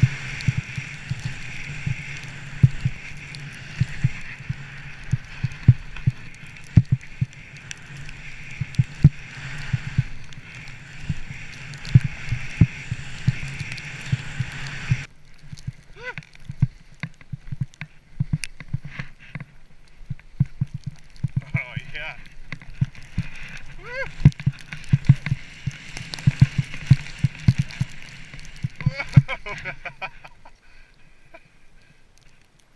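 Skis running through deep powder snow, heard through a helmet-mounted camera: a steady rush of snow and wind with frequent thumps and knocks as the skis turn and hit bumps. The high rushing part falls away about halfway through, and a few brief vocal sounds come through in the second half.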